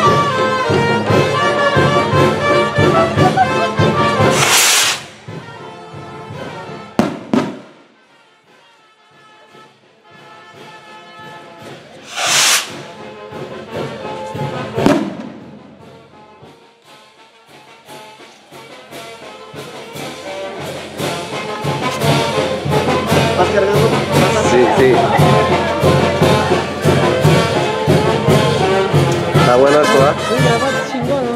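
Brass band music plays, then drops away for about ten seconds and builds back up. Loud firework bangs go off about five seconds in and twice more near the middle.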